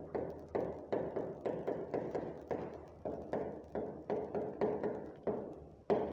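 A stylus knocking against the glass of an interactive touchscreen board as a word is handwritten: a run of short, sharp taps, about three a second, over a faint steady low hum.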